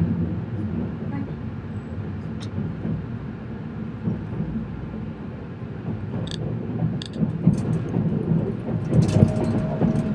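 Electric JR West train running at speed, heard inside the passenger car: a steady low rumble with scattered sharp clicks and rattles, and a faint steady tone that rises slightly near the end.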